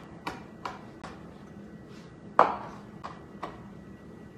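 Chef's knife mincing fresh sage leaves on a cutting board: a run of short, uneven chopping knocks, with one louder knock a little past halfway.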